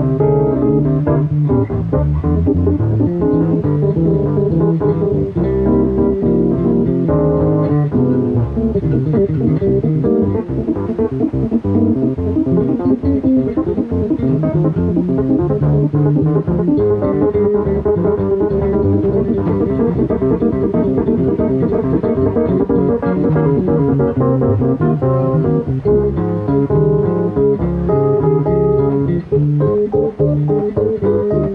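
A live instrumental duo of electric bass guitar and Yamaha CP digital stage piano, with the bass out in front.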